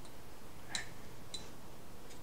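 Two light clicks, about 0.6 s apart, of a small utensil knocking against a bowl as sticky shisha tobacco is scooped and pushed into a hookah head.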